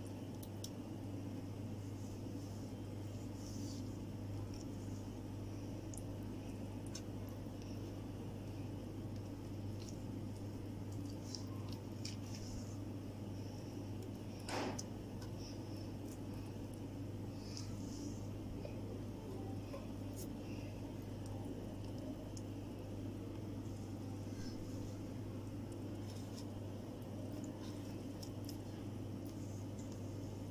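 Faint, soft wet dabbing and squishing of a silicone basting brush working a spice paste over raw marinated chicken drumsticks, over a steady low hum. One sharp click comes about halfway through.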